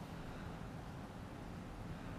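Steady low background hiss and faint low rumble: room tone, with no distinct event.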